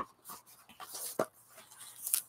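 Pages of a thick, collaged art journal being turned by hand: soft, irregular paper rustles with a couple of light clicks, one at the start and one about a second in.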